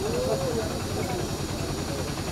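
Steady hiss of outdoor street noise, with a short voice-like call that rises and falls near the start.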